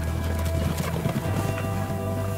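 Hoofbeats of a herd of galloping horses layered with music that holds a deep sustained bass note and steady held tones.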